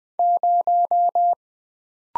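Morse code at 20 words per minute, a single steady beep keyed as five equal dashes: the digit zero.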